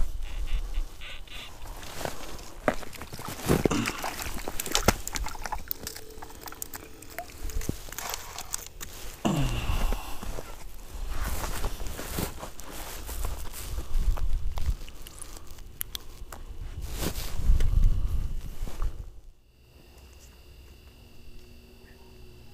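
Close rustling, clicks and knocks of an ice angler's clothing and gear moving near the microphone, with low rumble underneath and a couple of short falling sounds; it goes much quieter near the end.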